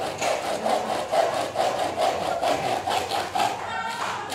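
Handsaw cutting a wooden board, quick even back-and-forth strokes at about two and a half a second.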